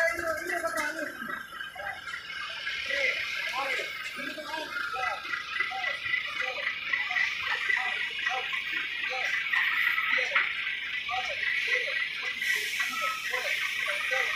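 Indistinct voices of people talking, with no clear words, over a steady hiss that builds up about two seconds in.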